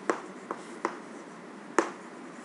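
Chalk being written on a chalkboard, heard as a handful of sharp clicks and taps as the letters are stroked out, the loudest near the end.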